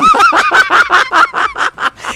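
A person's loud, high-pitched cackling laughter, a rapid run of short laughs at about seven or eight a second.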